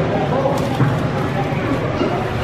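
Several people talking in the background, with a couple of faint clicks about half a second in.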